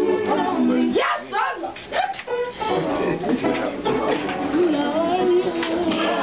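Several voices singing a gospel song a cappella in held harmony. About a second in the singing breaks briefly and one voice slides upward, then the harmonised voices resume.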